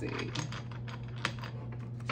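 A deck of tarot cards handled and shuffled in the hands: a run of light, irregular clicks and taps, about eight in two seconds, over a steady low electrical hum.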